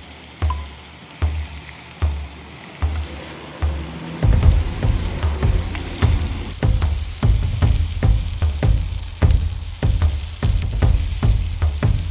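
Pork, barley, apple and leek sizzling in butter in a cast-iron skillet over a wood fire, while a wooden spoon stirs in the pan. Low knocks come every second or so at first and grow denser and louder about four seconds in.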